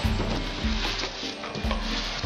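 Background music with a low bass line and a steady beat.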